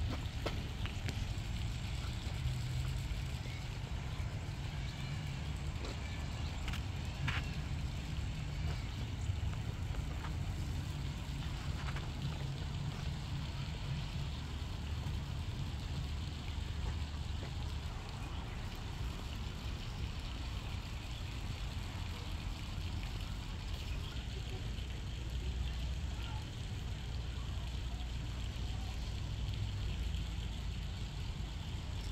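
Steady low outdoor rumble, like distant traffic or wind on the microphone, with a few faint high chirps about seven seconds in.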